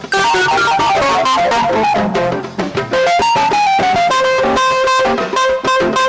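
Jazz played on electric guitar: a quick single-note line that steps down in pitch over the first few seconds, then settles into held notes.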